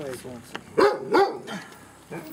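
A dog barking twice in quick succession, two short loud barks.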